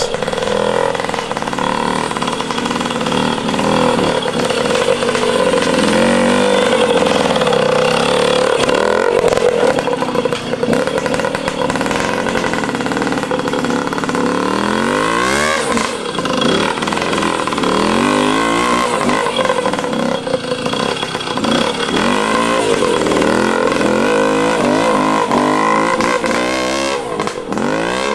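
Trials motorcycle engine working up a steep section, its note rising and falling with the throttle throughout, with a sharp rev about halfway.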